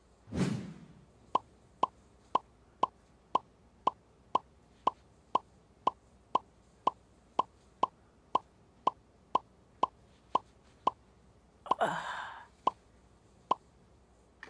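Quiz-show puzzle-board sound effect: short plinking blips, about two a second, one for each letter revealed on the board, opening with a falling swoosh. A brief louder burst breaks in about twelve seconds in, before the last two blips.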